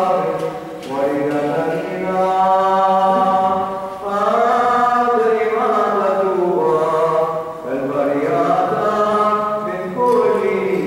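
Orthodox liturgical chant: voices sing long, slowly moving notes over a steady lower held note, with short breaths between phrases about a second in, at four seconds and near eight seconds.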